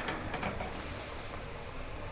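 Tulumbe dough deep-frying in a pot of hot oil, sizzling steadily, with a brief brighter hiss about a second in.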